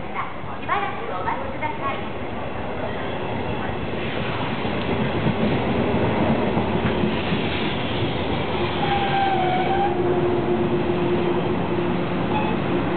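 A 485 series electric multiple unit arrives at the platform and passes close by, its running noise building over the first few seconds and then staying loud as the cars roll past. A thin steady whine joins in during the second half.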